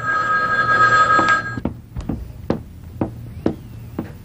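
Telephone ringing: one long electronic ring made of two steady tones, which stops about a second and a half in. Sharp single clicks follow, about two a second.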